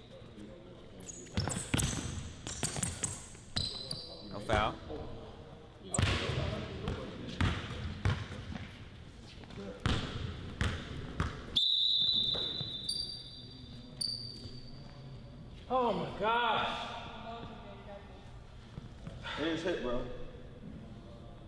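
A basketball dribbling on a hardwood gym floor, a series of separate bounces through the first half. In the second half come several short high squeaks of sneakers on the floor.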